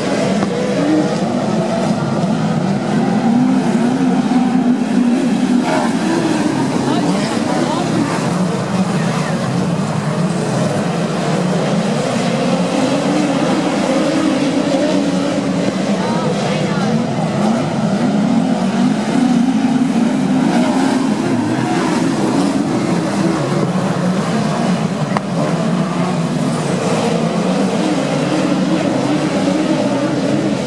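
A field of speedway midget cars circulating slowly under caution, lining up two by two for a restart. Several engines run together, their revs rising and falling a little without any full-throttle surge.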